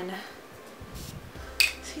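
Fine-mist makeup spray bottle pumped: a faint puff about a second in, then a sharper, louder spritz of hiss about a second and a half in.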